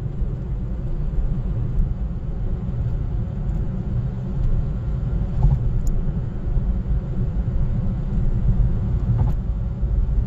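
Steady low rumble of a car cruising at speed, heard from inside the cabin: mainly tyre and road noise with the engine beneath it.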